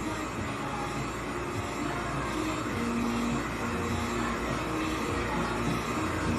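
Handheld heat gun blowing steadily at a glitter-coated tumbler, a continuous even rush of air.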